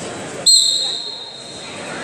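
Referee's whistle: one sharp, loud blast about half a second in that fades over about a second in the hall, signalling the wrestlers to resume.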